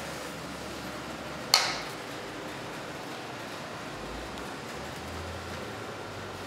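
Steady room hiss with a single sharp slap about a second and a half in that dies away quickly.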